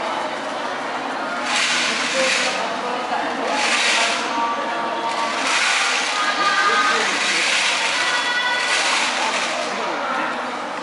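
About five separate bursts of hissing, each roughly a second long, over a background of voices and chatter.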